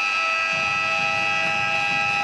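Basketball arena's end-of-game horn sounding one long steady electronic tone as the game clock runs out.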